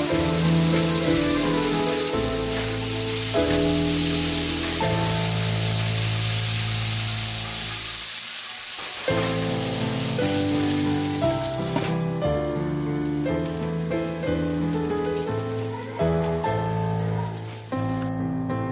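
Raw banana slices in spice masala sizzling in a pan just after a splash of water, under piano background music. The sizzling stops about two-thirds of the way through, leaving only the music.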